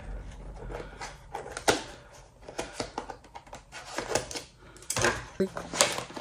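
Irregular clicks, taps and light knocks of small cardboard perfume boxes and glass perfume bottles being handled, opened and set down.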